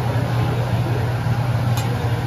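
Steady low hum and noisy background of a busy teppanyaki restaurant, with one sharp metallic click near the end as the chef's steel spatula knocks on the flat steel griddle.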